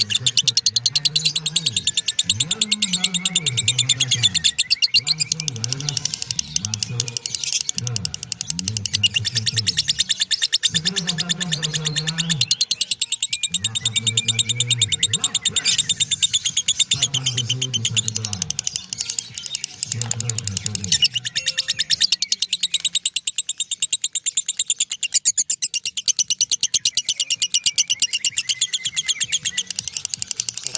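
Masked lovebird giving its 'ngekek' call: a long, unbroken run of very fast, high-pitched chattering trills. A deeper pitched sound runs underneath for about the first two-thirds, then stops.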